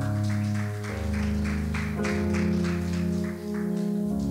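A live worship band playing a quiet instrumental interlude. Held keyboard and bass chords change every second or so over a light, steady tick about four times a second.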